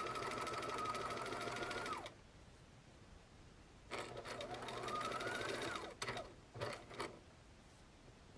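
Electric sewing machine stitching a seam through layered fabric. It runs until about two seconds in, then stops; after a pause it starts again, its whine rising as it picks up speed, and stops about six seconds in, followed by a couple of sharp clicks.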